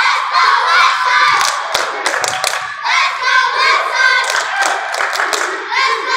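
A group of young cheerleaders chanting a cheer together, with sharp hand claps cutting in between the lines.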